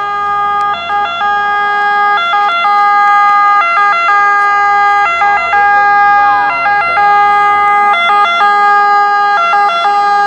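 Two-tone siren of an Italian fire engine, switching back and forth between two pitches, with the truck's engine running underneath. It grows louder over the first few seconds as the truck approaches, then holds loud.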